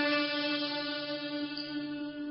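Teochew opera music holding one long, steady note.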